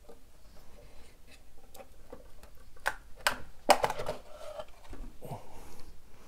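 Metal chassis of a 1935 Philco 54C tube radio being slid out of its wooden cabinet: scattered knocks and scrapes, the loudest knocks bunched around three to four seconds in.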